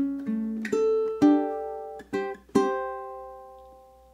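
Low-G ukulele fingerpicked: a bluesy riff of single notes and two-note shapes, ending with two plucks of the top two strings together. The last pluck, about two and a half seconds in, is left to ring and slowly fades.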